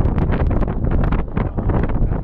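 Strong wind buffeting the camera microphone on the open deck of a moving boat: a loud, gusty rumble.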